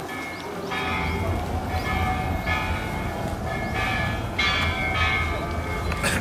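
Bell-like tones struck about four or five times, each note ringing on before the next, at slightly different pitches, over a steady low hum.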